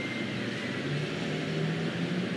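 Steady outdoor background noise with the low hum of a car passing.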